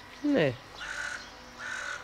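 Eurasian magpie giving two harsh, grating calls, about half a second apart, in the second half.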